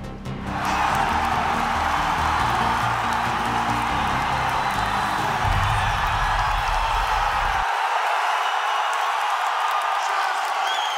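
Arena crowd cheering in a steady roar, over a bass-heavy music track that cuts off suddenly about three-quarters of the way through, leaving the crowd noise alone.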